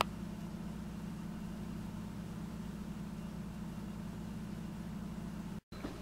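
Steady low hum with faint hiss, a room tone with no speech, and a brief click right at the start.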